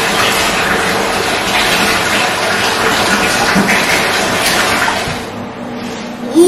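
Water running in a bathtub, a steady rush that dies away about five seconds in.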